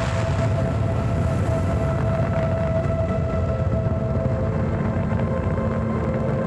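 Deep, steady rocket-launch rumble from an animated liftoff's soundtrack, under a held musical chord of sustained tones.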